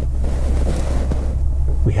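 Steady low hum inside a car's cabin, with a brief rushing noise over it from about half a second in, lasting about a second.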